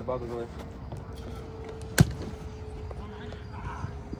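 A soccer ball struck hard once, a sharp thud about two seconds in, over a faint steady hum. A brief shout comes right at the start.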